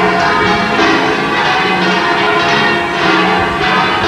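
The 25 church bells of the Giralda belfry ringing all at the same time: many bells struck together in a dense, continuous peal with strokes overlapping throughout.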